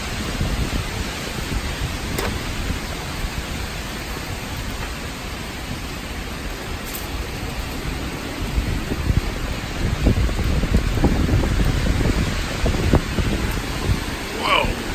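Heavy rain and strong gusting wind of a severe thunderstorm, the winds believed to be a downburst. The wind grows louder and gustier about eight seconds in.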